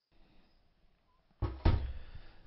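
Near silence, then about one and a half seconds in, two quick knocks, the second louder, from the oiled mixing bowl being handled as the bread dough is put into it to rise.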